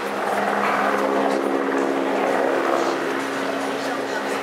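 A motor engine running with a steady hum, and a rush of engine noise that swells louder about half a second in and eases off near the end, like a vehicle or craft passing.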